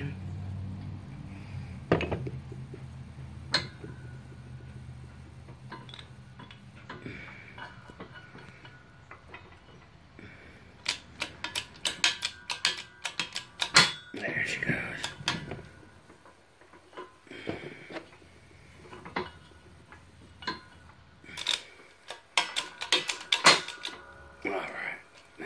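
Sharp metallic clinks and knocks of steel parts and tools handled at a shop press, during control arm bushing work. They come in quick, irregular clusters in the second half. A low steady hum fades out in the first few seconds.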